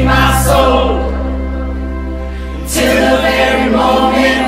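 Worship song sung by a group of voices over acoustic guitars, keyboard and drums. The sound thins to held notes about a second in, then the voices and band come back in strongly near three seconds.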